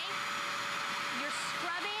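Bissell Spot Clean Pro portable deep cleaner running with a steady motor whine and suction as its hand tool is drawn across carpet.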